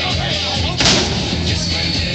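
Rock music playing, with one sharp heavy bang a little under a second in: a strongman power-stairs weight marked 240 slamming down onto a step.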